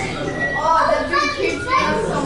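Children's voices talking, high-pitched with no clear words.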